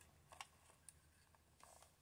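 Near silence with a few faint plastic clicks in the first second, from the lid of a mini thermal printer being unlatched and opened.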